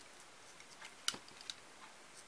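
A few faint, sharp clicks of a snap-off utility knife nicking the fingers of a thin plastic hand cut from a food tray, the sharpest about a second in.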